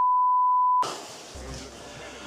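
TV colour-bars test tone: one steady high beep held for just under a second, cut off suddenly.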